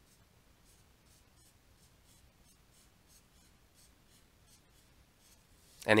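Faint scratching and tapping of a pen on a drawing tablet: a run of short, irregular strokes as a long zigzag line is drawn. A man's voice starts speaking right at the end.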